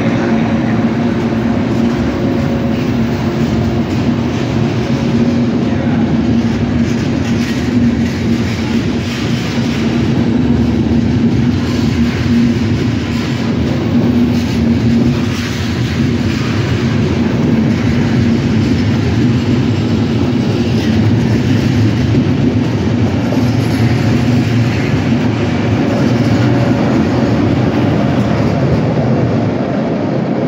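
Intercity passenger coaches rolling past as the train departs, a steady loud rumble with a low hum and scattered clicks of wheels over rail joints.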